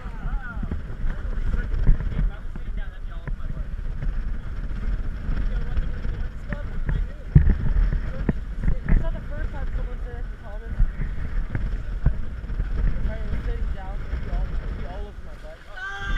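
Sailing catamaran under way at sea: steady wind rumble on the microphone and water rushing past the hulls, with occasional knocks, the loudest about seven seconds in.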